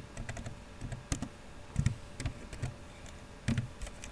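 Computer keyboard being typed on: a run of separate keystrokes, a few a second at an uneven pace.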